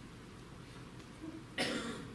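Quiet room tone, then a single short cough about one and a half seconds in.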